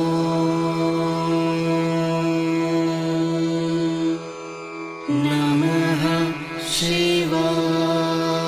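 Devotional mantra chanting over a steady drone. One long note is held for about four seconds, then a new phrase with wavering pitch begins a little after five seconds in.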